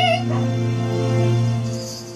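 Karaoke backing track holding a sustained chord between sung phrases. A soprano's vibrato note ends right at the start, and the chord fades away near the end.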